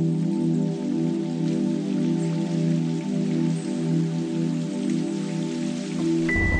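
Theme music opening on a sustained, unchanging synthesizer chord, with a steady patter of rain laid over it.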